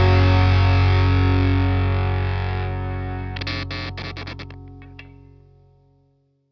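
Closing distorted electric guitar chord of a rock song ringing out and fading away, with a quick run of short sharp clicks about halfway through as it dies out.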